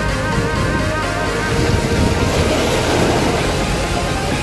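Background music with steady notes, over the rushing wash of sea waves surging against breakwater rocks, which swells a little past the middle.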